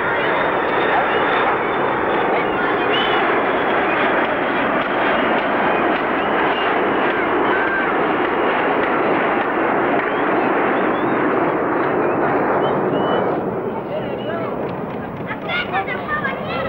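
Jet airliner passing low overhead: a loud, steady rush that eases off about thirteen seconds in. Children's voices sound faintly through it.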